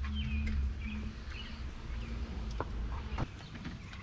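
Small birds chirping in short calls over a low, steady rumble, with a couple of light knocks near the end as a mountain bike is set into an SUV's cargo area.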